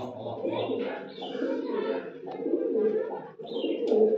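A flock of domestic pigeons cooing, many birds calling over one another in a small loft.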